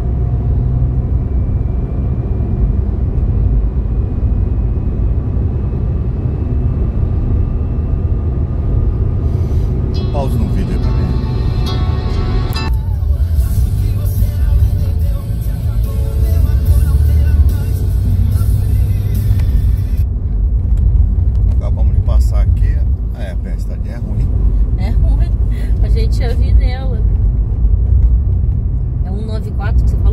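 Steady low rumble of tyres and engine inside a car cruising on a highway, with fainter higher-pitched sounds over it from about ten seconds in.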